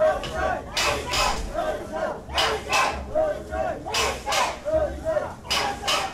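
A festival crowd chanting a two-beat call in unison, repeated about every second and a half, with low thuds in the same rhythm.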